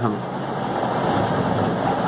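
A steady, even background noise with no separate strokes or clicks, the kind a running fan or air conditioner makes.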